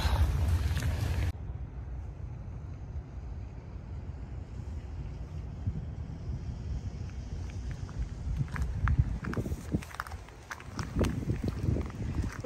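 Wind rumbling on a phone microphone, which cuts off abruptly about a second in. What follows is a quieter outdoor hush of light wind, with a few faint taps near the end.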